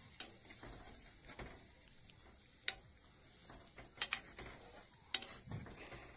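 A plastic spatula stirring cut flat beans in a little water in a nonstick pan: soft scraping and sloshing, with a few sharp clicks of the spatula against the pan, near the start, midway and twice more late on, over a faint steady hiss.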